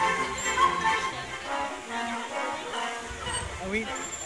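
Background music playing, with a California-type sea lion barking, the dog-like call of a sea lion.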